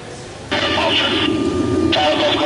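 Recorded in-flight aircraft noise from a tanker's boom operator position during aerial refueling, played back over loudspeakers; it starts suddenly about half a second in and runs on loud and steady.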